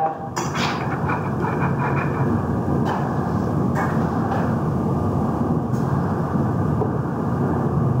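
Steady rumbling background noise, fairly loud and mechanical-sounding, with a few faint brief clicks.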